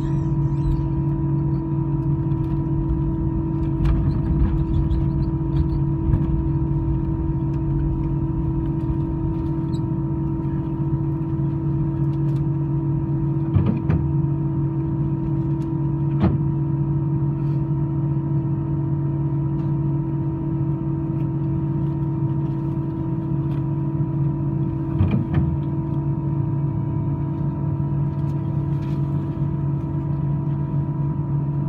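Cabin noise inside an Airbus A320-214 taxiing, heard from a seat over the wing: its CFM56-5B engines run at low taxi thrust as a steady hum with several held tones. A few brief knocks come through, around the middle and again near the end.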